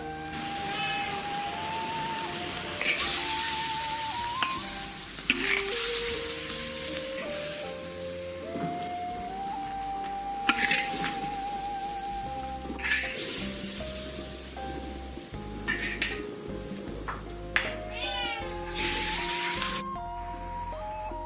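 Background music throughout, over sizzling and a metal ladle working shrimp in a large iron wok, with several loud scraping bursts. A cat meows near the end.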